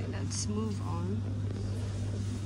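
A steady low machine hum, with a short stretch of a person's voice in the background about half a second in.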